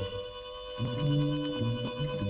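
A blues harmonica holds one long note, under which a low bass part sings two notes. This is the instrumental break of an early-1950s 78 rpm blues record.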